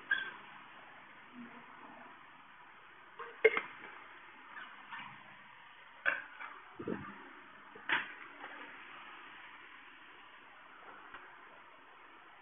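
A water bottle handled and set down on the floor: a handful of short knocks and clicks spread over several seconds, over faint room hiss.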